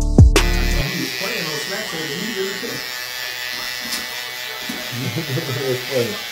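Electric hair trimmer buzzing steadily as it edges up a hairline. A music beat cuts off sharply about half a second in, and faint talking runs under the buzz.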